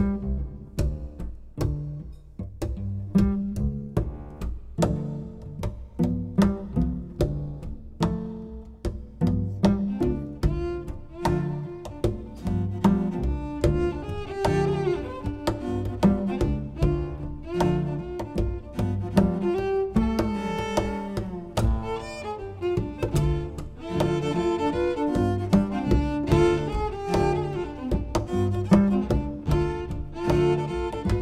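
Cello quartet playing a blues piece. It opens with short, plucked-sounding notes on a steady beat, and bowed lines grow fuller from about a third of the way in.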